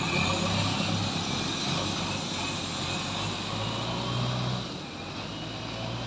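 JCB backhoe loader's diesel engine running as it drives along the road and moves away, growing a little quieter about two-thirds of the way through, with a motorcycle passing near the start.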